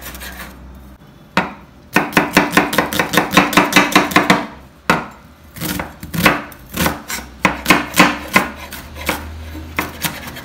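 Chef's knife finely chopping an onion on a bamboo cutting board: quick runs of knife strikes against the wood, a fast run of about five a second early on, then slower, uneven strikes after a short pause.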